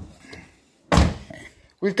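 Dodge Caliber rear car door being shut with a single solid thump about a second in, after a lighter knock at the start; the door is closed to check its gap against the newly fitted quarter panel.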